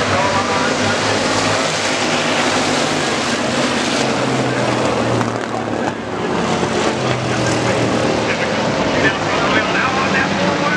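A pack of dirt-track stock cars racing, their engines running hard together as one loud, steady drone whose pitch shifts as the cars go through the turn.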